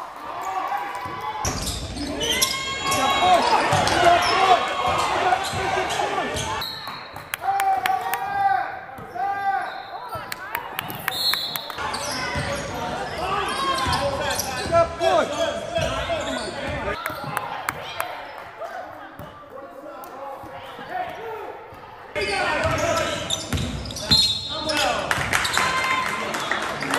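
Basketball game in a gym: a ball bouncing on the hardwood court amid players' and spectators' voices.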